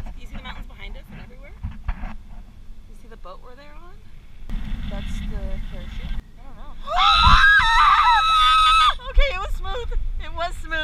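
Women's voices talking and laughing during a parasail flight, with rumbling wind on the microphone. About seven seconds in comes a loud, high-pitched scream held for about two seconds, the loudest sound here.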